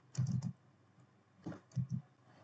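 Computer keyboard typing: a quick run of keystrokes near the start, then a few more separate keystrokes near the end.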